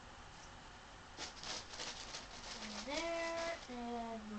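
A person's voice making wordless drawn-out tones: a note slides up and is held briefly, then a lower note follows near the end. Before it there is about a second and a half of scratchy noise.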